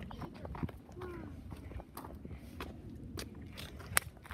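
Footsteps on wood-chip mulch: quiet, scattered light crunches and clicks, with a faint voice briefly in the background about a second in.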